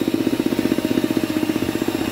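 Electric hand mixer running, its beaters whisking a thick egg-and-sugar batter as flour goes in. It gives a steady motor hum with a fast, even pulsing.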